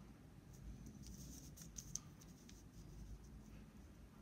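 Faint scraping and light ticks of a plastic Numicon counting shape being slid and turned over a sheet of paper, mostly in the first half, over a very quiet room.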